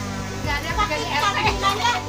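Several people chatting at once in a lively group conversation, with background music underneath.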